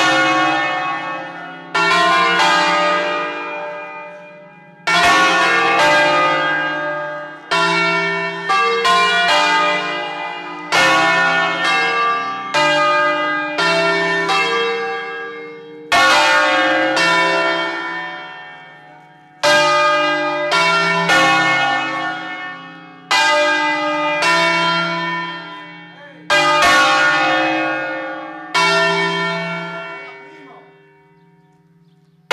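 Five bronze church bells cast by Angelo Ottolina of Bergamo in 1950, tuned to a slightly flat D-flat, rung by rope in the Ambrosian concerto style. They strike in clusters every few seconds, and each cluster rings on and dies away before the next. The bells are loud and close, and the last cluster fades out at the end.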